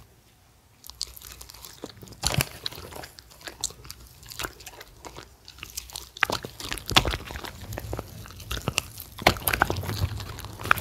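Shetland sheepdogs biting and chewing pieces of pan-fried battered jeon, with irregular sharp clicks and wet smacks of their jaws. Nearly silent for about the first second, then the chewing comes thicker from about six seconds in.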